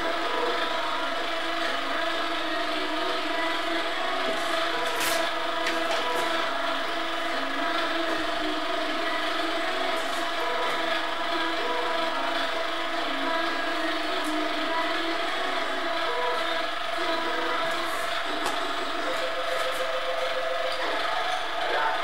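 Milling machine running steadily, a constant mechanical hum made of several steady pitches, with a couple of light clicks about five and six seconds in.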